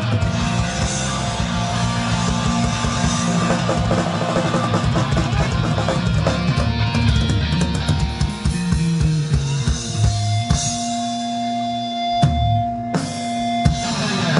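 Hardcore punk band playing live through a club PA: distorted electric guitar, bass and a fast, loud drum kit, with no vocals. About ten seconds in, the playing breaks down to held, ringing guitar notes with separate drum hits, then the full band comes back in near the end.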